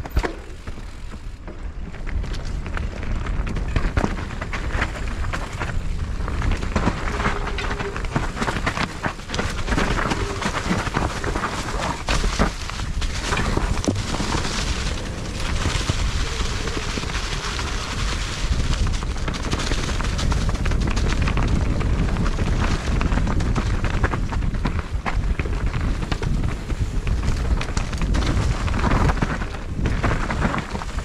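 Mountain bike descending a dirt woodland trail, heard from a helmet-mounted camera: steady wind noise over the microphone with tyre noise on dirt and leaves, and frequent rattling knocks from the bike over bumps.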